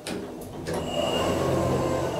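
Schindler Eurolift traction elevator's automatic sliding doors opening. A few clicks in the first second are followed by the doors running open, with a steady high motor whine over the sliding noise.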